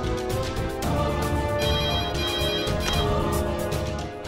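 A telephone ringing, a trilling ring heard for just over a second from about one and a half seconds in, over background music.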